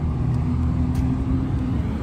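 Steady low motor rumble with a steady hum, like a vehicle engine running nearby.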